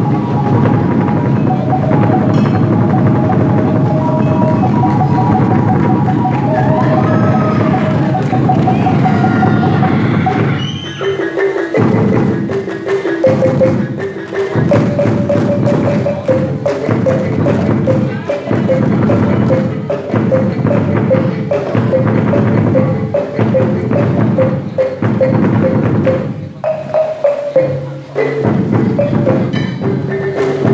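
Traditional gendang silat accompaniment: a pipe melody of held notes over rhythmic hand drumming. About eleven seconds in, the drumming thins into distinct, separated strokes under the continuing melody.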